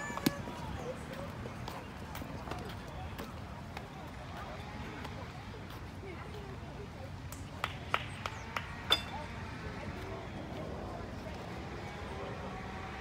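Background chatter of spectators and players at an outdoor ballfield, with a short run of sharp knocks about eight to nine seconds in.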